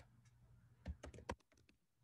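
Faint keystrokes on a computer keyboard: a short run of typing about a second in.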